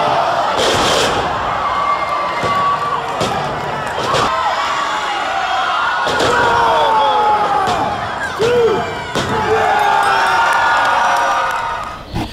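Live wrestling crowd cheering and shouting through a pinfall, with several sharp slaps and thuds from the ring as the referee counts on the mat.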